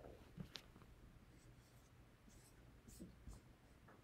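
Near silence, broken by a few faint, short rustles and light clicks of paper and a book being handled.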